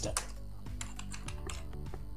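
Computer keyboard keys clicking as code is typed, a quick run of separate keystrokes.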